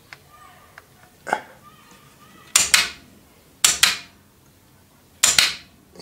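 The head-shift mechanism of a Sanyo music centre's 8-track player clacking as the program is changed and the tape head steps up and down. There is a fainter click just over a second in, then three sharp double clacks about a second or so apart.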